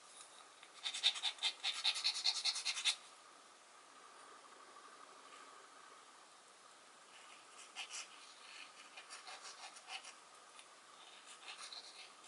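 Close handling of a plastic glue bottle and a small wooden panel: a burst of rapid scratchy clicks lasting about two seconds near the start, then fainter scraping and ticks as the glue nozzle is drawn in lines across the back of the wood.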